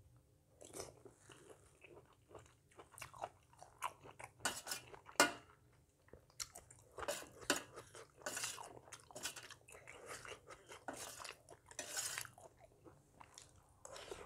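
Close-miked eating of a spicy salmon salad with rice noodles: wet chewing, lip smacks and mouth clicks in an irregular stream, with a few longer sucking noises as food is taken from the spoon.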